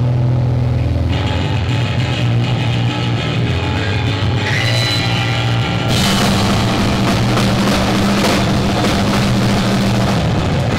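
Live rock band opening a song: held low bass and electric guitar notes at first, then the drum kit and full band come in about six seconds in and play on loud.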